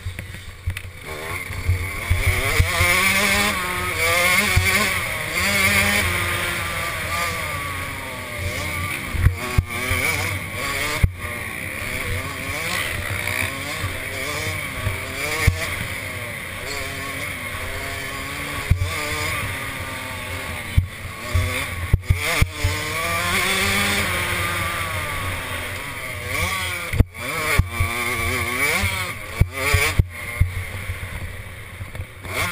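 A 65cc two-stroke youth motocross bike engine heard close up from the bike, revving hard and dropping off again and again as the rider races the track and shifts gears. Sharp knocks break in now and then, around 10 s, 22 s and 27 s.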